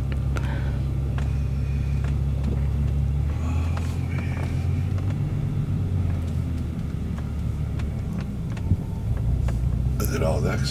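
Bentley car running at low speed, heard from inside the cabin as a steady low engine and road rumble that shifts slightly in pitch a few seconds in.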